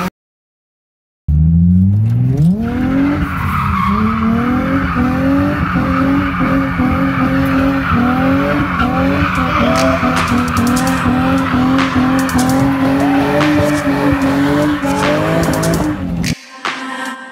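Drift car engine revving up hard starting about a second in, then held at high revs with rapid throttle changes while the tyres squeal in a slide.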